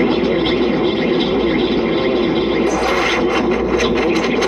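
A looped recording of a man's voice repeating a short phrase, layered and effect-processed into an indistinct, overlapping wash of voice with no words made out. It runs over a steady low hum.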